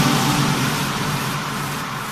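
Song music cuts off at the start, leaving a hissing, wind-like noise that fades away steadily over a faint low drone: a track's fade-out between songs.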